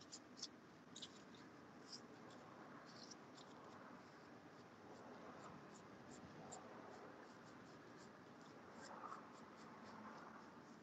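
Faint light ticks and scratches of a small paintbrush dusting glitter powder over a resin surface, coming in clusters, over low room hiss.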